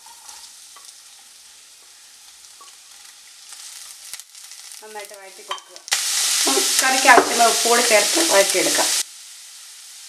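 Sliced onions and green chillies frying in hot oil in a nonstick kadai. The first half is quiet. About six seconds in a loud sizzle starts suddenly and runs for about three seconds before cutting off, with a wavering pitched sound over it.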